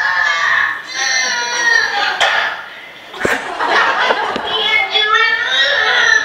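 A small child's high voice talking in unclear words, with a single knock a little over three seconds in.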